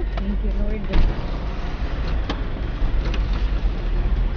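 Steady low road and engine rumble heard from inside the cabin of a moving car, with a few faint clicks.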